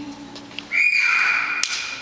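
A whistle sounds a single high tone in a break in the music. It slides up briefly, then holds steady for about a second, with a sharp click near its end.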